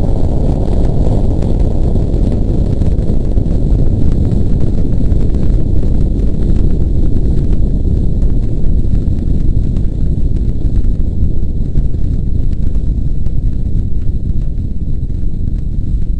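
Loud, continuous deep rumble of a nuclear explosion from test footage, steady throughout.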